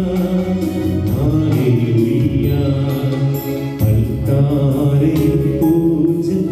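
A recorded song with a singing voice over keyboard accompaniment and a steady beat.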